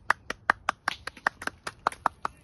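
A person clapping hands in a steady run of single claps, about five a second.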